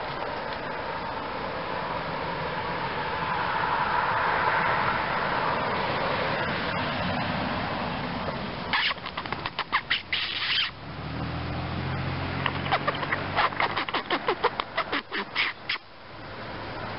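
Squirrel giving rapid chattering alarm calls in two bouts, the first about nine seconds in and a longer one from about twelve seconds, roughly five sharp calls a second, over a steady background rush.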